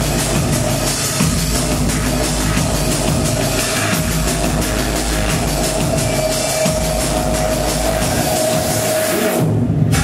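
Drum and bass DJ mix played loud over a club sound system, with heavy bass and a held mid-range tone over the beat. Near the end the high end drops out briefly, as if filtered, before the full mix returns.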